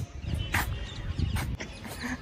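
Faint animal calls over a low rumble.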